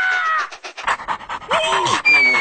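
Cartoon dog panting and sniffing in quick puffs. A short, high, falling squeal from the yellow larva comes at the start, and another near the end.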